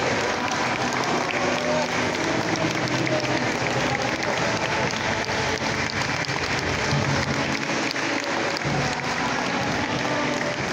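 Crowd applauding steadily inside a church, with voices and some music underneath.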